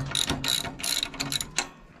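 Socket ratchet clicking in quick, irregular runs of metal clicks as the U-bolt nuts on a Brunswick pinsetter's ball-wheel guide rollers are worked loose.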